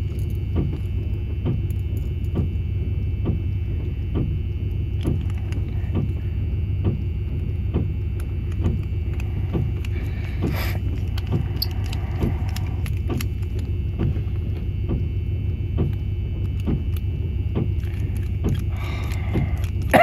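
Small metallic clicks and ticks of a screwdriver driving the screws back into a brass CCL spring-latch cabinet lock, the lock being reassembled after rekeying. All of it sits over a steady low rumble.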